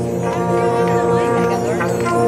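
Marching band's brass section, trumpets and trombones, playing held notes, with the chord changing near the end.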